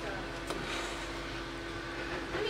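A single light click about half a second in as a glazed pottery pot is lifted off a wooden shelf, over a steady low hum and faint background voices.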